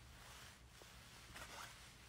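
Near silence: room tone with a low hum and a couple of faint, brief rustles.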